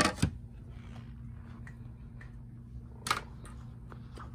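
Tennis racket handled on a clear acrylic balance board: two sharp knocks at the start and another about three seconds in, over a steady low hum.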